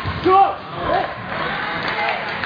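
A person shouting twice in a large hall, the first call the louder, each one rising and falling in pitch, over the steady murmur of a crowd.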